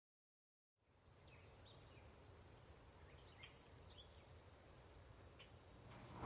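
Faint outdoor ambience that fades in about a second in: a steady high chirring of insects over a low rumble, with a few short high chirps here and there.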